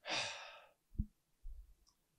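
A man's heavy sigh, one breathy exhale of about half a second, followed about a second in by a soft low thump.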